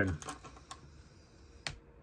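Plastic LEGO pieces clicking as minifigures are handled and pressed onto the build: a few scattered sharp clicks, the loudest near the end.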